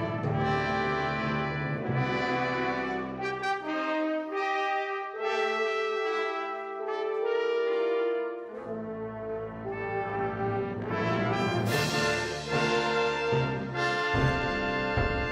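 Wind ensemble playing a brass-led fanfare in sustained chords. The low instruments drop out for a few seconds in the middle, leaving only the higher voices, then the full band returns with a bright percussion crash near the end.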